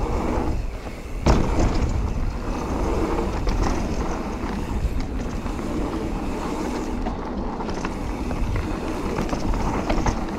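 Full-suspension mountain bike descending a dirt trail at speed: continuous knobby-tyre rumble on dirt, with chain and frame rattle and wind on the microphone. About a second in the tyre noise briefly drops away, then a sharp thump as the bike lands off a jump.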